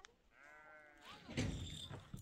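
One bleat from a sheep or goat in the first second, followed by a louder, rough noise in the second half.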